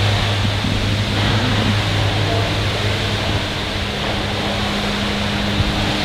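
Steady rushing background noise with a low hum, like building ventilation fans running in a large service garage.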